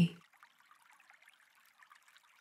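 Faint, steady trickle of a running stream, an ambient water sound bed, after a woman's narrating voice trails off in the first moment.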